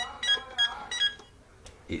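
Burglar alarm keypad beeping: about five short, evenly spaced beeps, roughly three a second, stopping a little past a second in, as a code is entered and the alarm is switched off.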